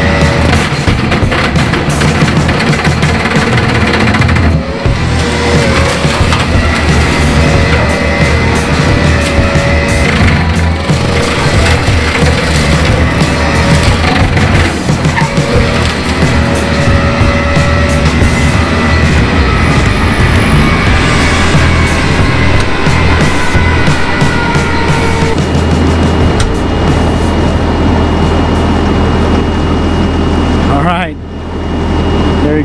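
Bobcat Toolcat 5600 revved high on high-flow hydraulics, driving an MTL XC7 brush mower whose swinging axes chew into an eight-inch tree. A heavy steady drone runs under a whine whose pitch sags slowly as the cutter takes load, with many sharp knocks of blades striking wood.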